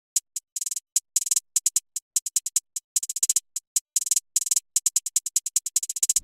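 Electronic trap hi-hat pattern played alone from a software drum sampler: crisp, short hi-hat ticks with no kick or bass. The spacing is uneven and breaks into quick stuttering rolls several times.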